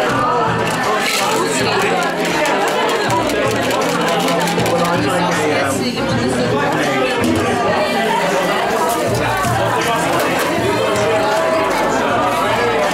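Busy bar ambience: background music with a bass line under the steady chatter of many guests.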